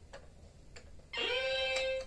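Two faint taps, then about a second in a tablet's speaker plays a bright electronic note that slides up and holds: the start of app or video music.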